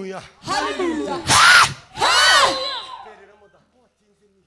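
A man's loud, harsh, distorted shouting through a microphone and PA, two drawn-out calls that rise and fall in pitch, the first and loudest about one and a half seconds in. The sound fades away about three and a half seconds in.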